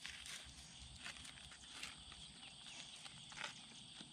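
Faint, soft scrapes and taps of a small hand trowel digging into soil in a planting hole cut through woven weed-barrier fabric, a few irregular strokes.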